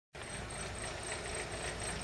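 A car engine running at low revs, a steady low hum from a vehicle on the street.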